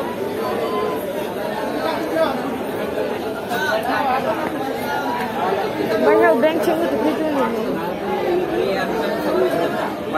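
Crowd chatter: many voices talking over one another, with a nearer voice standing out more clearly from about six seconds in.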